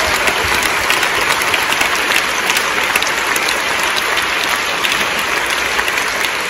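Large audience applauding steadily, a dense sustained patter of many hands clapping.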